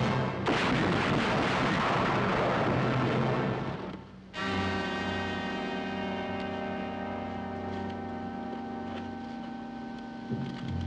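A gunshot about half a second in, swallowed by a loud burst of dramatic orchestral score. The music breaks off abruptly about four seconds in, then continues as quieter held chords.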